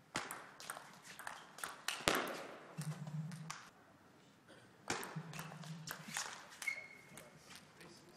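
Table tennis rallies: a table tennis ball struck back and forth, making quick runs of sharp clicks off the bats and table, with short pauses between points.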